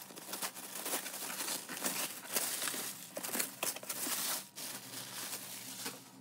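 Tissue paper crinkling and rustling in a run of short crackles as it is pulled off a gift-wrapped box, easing off near the end.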